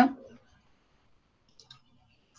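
The last of a woman's speech fades out, then near silence with two faint, quick clicks about one and a half seconds in.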